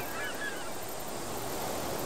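A flock of gulls calling, many short calls in quick succession that die away about a second in, over a steady background hiss.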